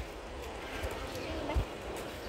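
Footsteps of someone walking on pavement, dull knocks about once a second, with faint voices in the background.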